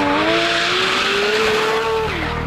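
Porsche 992 GT3 RS's naturally aspirated flat-six revving high during a drift, its pitch climbing steadily. Tyre noise from the spinning, sliding rear wheels runs under it.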